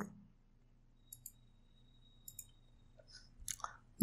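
Near silence with a few faint computer mouse clicks, in two pairs, and faint mouth noises just before speech resumes near the end.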